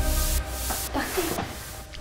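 Electronic dance track ending: the kick drum and bass stop and a bright hissing noise wash carries on alone, fading out just before two seconds.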